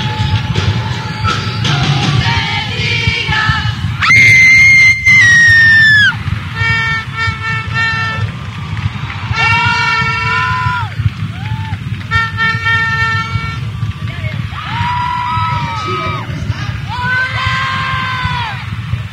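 Live concert audio: crowd noise and screaming under loud, held horn-like tones. The loudest is a two-second blast about four seconds in; strings of short blasts and longer held tones follow.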